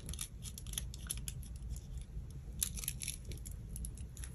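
Paper crafting at close range: tissue paper and cardboard handled, making scattered small crinkles and clicks, with a busier patch of crackling in the second half.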